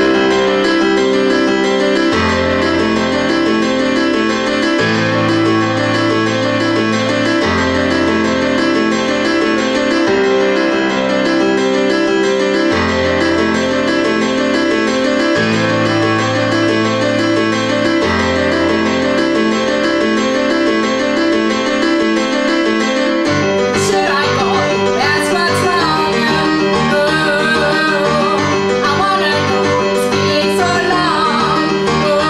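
Live keyboard playing a repeating broken-chord accompaniment, the bass note changing about every two and a half seconds. A singing voice comes in about 23 seconds in.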